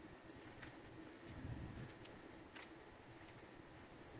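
Near silence with a few faint, scattered small clicks: a 2 mm hex key turning out the small Allen screw in the base of a Shimano 105 ST-5500 road shifter.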